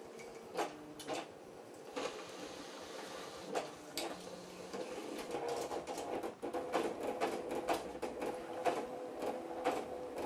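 Apple StyleWriter inkjet printer printing a test page: a steady hum with a few separate clicks as the paper is drawn in, then from about five seconds in a denser, louder run of rapid mechanical clicking as it prints.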